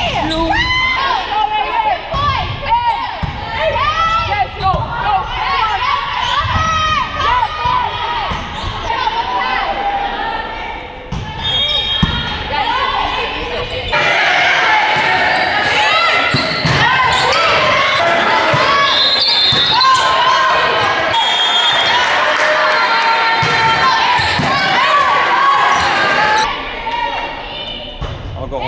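Indoor volleyball rallies in a gymnasium: players' shouts and calls over the smack of ball hits, echoing in the hall. The sound changes sharply about halfway through, at a cut to another match.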